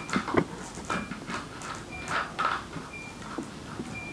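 Soft handling noises: a plastic water bottle set down, then light taps and rustles. A faint short high beep sounds about once a second throughout.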